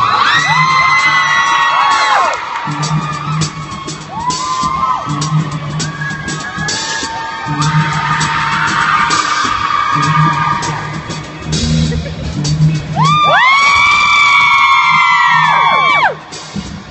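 Live rock band playing, with bass notes and drums, while audience members near the phone whoop and yell in long rising-and-falling calls, loudest in the last few seconds.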